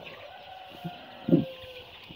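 A shed full of young Sonali chickens calling faintly, with a short louder call a little over a second in.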